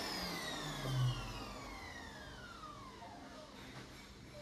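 World Dryer Airforce hand dryer's motor winding down after cutting off: a whine that slides steadily lower in pitch and fades away. There is a brief low hum about a second in.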